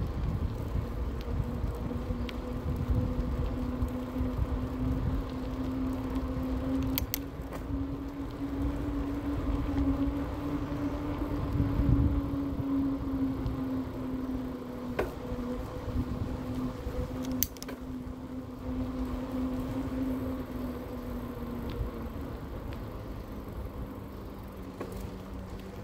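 Electric bike motor whining in one steady tone that rises slightly with speed and drops back near the end, over a low rumble of tyres on asphalt and wind. A few sharp clicks.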